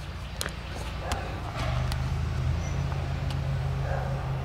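A steady low motor hum starts about a second and a half in and holds a constant pitch. A few light clicks come earlier.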